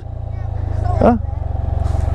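Can-Am Spyder RT-S roadster's engine idling steadily while stopped, a low even drone.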